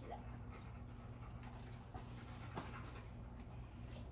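A dog panting softly, over a steady low hum.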